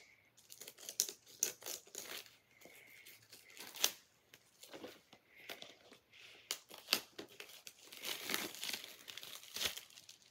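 Clear plastic shrink-wrap being torn and peeled off a Blu-ray disc case by hand, an irregular run of crinkles and crackles that gets busier and louder near the end as the wrap comes away.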